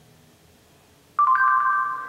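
Google voice search chime from the LG G3's speaker: an electronic tone of two notes, the lower one joined by a higher one a moment later, starting suddenly about a second in after a near-silent pause and held steady for under a second. It marks the spoken question having been taken in, just before the phone reads out its answer.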